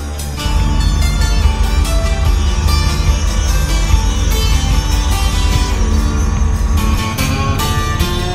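Background music with a heavy bass line that comes in and makes the music louder about half a second in.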